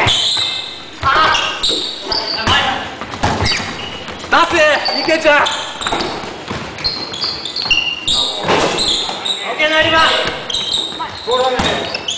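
Basketball bouncing and being dribbled on a wooden gym floor, a string of short sharp knocks that echo in a large hall, with players' voices calling out in between.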